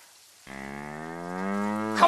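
A dairy cow mooing: one long, low moo that starts about half a second in and grows louder.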